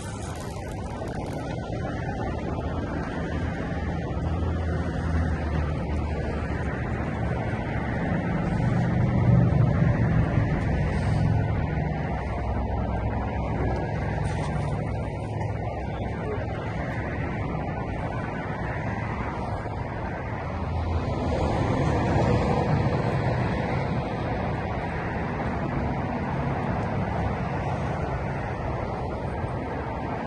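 Wind buffeting the microphone on an open seawall, a steady low rumble that swells twice, about a third of the way in and again about two-thirds through.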